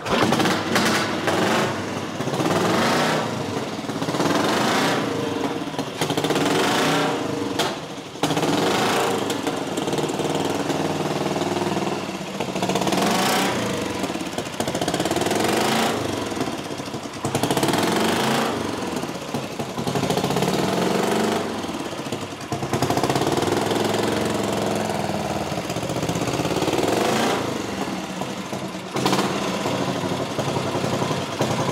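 A 1961 Matchless Typhoon replica desert-sled motorcycle's engine catches on a kick-start and runs loud, revved up and back down over and over, every couple of seconds.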